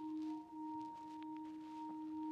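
Organ playing soft, sustained notes in two parts. It moves to a new chord at the start and then holds it, as the introduction to the sung offertory.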